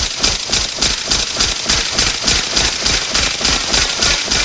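A steady, fast rhythm of hard percussive hits, about four a second, each with a deep thud under a bright crackle: the driving percussion of an action-film trailer soundtrack.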